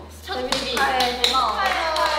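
A few people clapping, starting about a second in, with young women's voices speaking over the claps.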